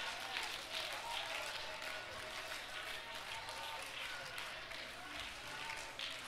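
Church congregation's overlapping voices during prayer, with scattered clapping. No single voice stands out.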